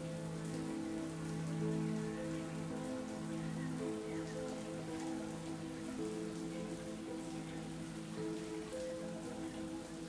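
Shower water spraying steadily, under background music with long held chords.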